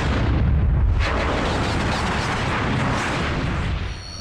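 Production-logo sound effect: a long, rumbling, explosion-like blast of noise, heavy in the bass. It swells in at once, holds for nearly four seconds and falls away near the end.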